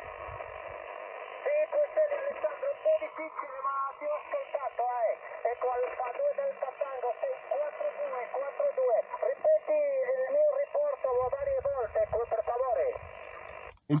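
A distant amateur station's voice coming in over a portable QRP transceiver's speaker: thin, narrow speech over steady band hiss. About a second and a half of hiss comes first, and the voice stops just before the end.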